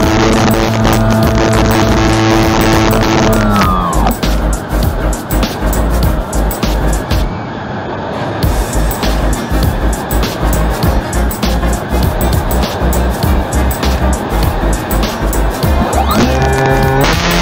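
E-flite Opterra's electric motor whining steadily, heard through the onboard camera, then winding down about four seconds in. Wind rushes over the microphone while the plane glides, and the motor winds back up right at the end.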